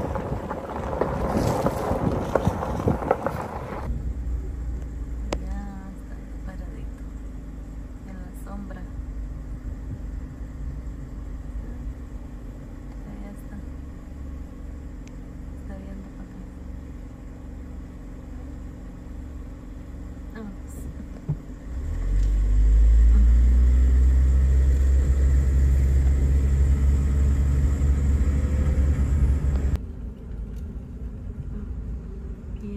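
A vehicle engine running with a steady low rumble; about 22 seconds in it gets much louder and its pitch climbs, as when the vehicle pulls away. Wind buffets the microphone in the first few seconds.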